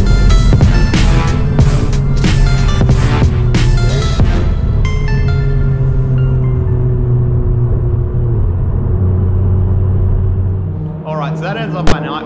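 Electronic dance music with a heavy beat. The beat drops out about four seconds in, leaving sustained low synth notes that fade away near the end, followed by a sharp click.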